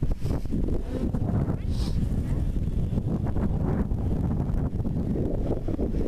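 Wind buffeting the camera microphone: a loud, uneven low rumble that rises and falls throughout.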